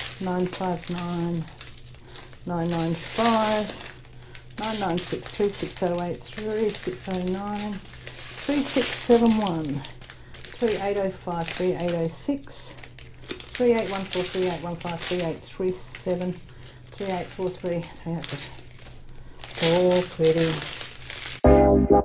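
Small plastic bags of diamond-painting drills crinkling and rustling as they are handled and sorted, with a voice talking on and off throughout. Electronic music cuts in near the end.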